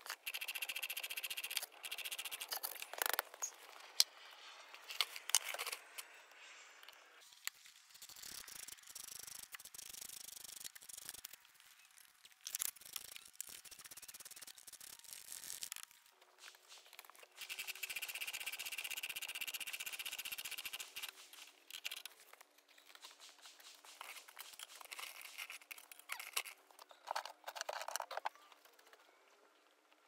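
A scissor jack being hand-cranked under a car, its screw and crank squeaking and rattling in spells, with scattered clicks and knocks in between.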